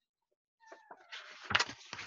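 Paper rustling as a hardcover picture-book page is turned, with sharp crackles about a second and a half in.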